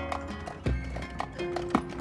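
Instrumental backing of a band's song in a pause between sung lines: sustained notes over a bass, with a few sharp percussion hits.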